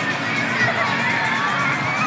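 Arena crowd cheering and shouting: many voices overlapping into a steady din, with high shouted calls rising and falling above it.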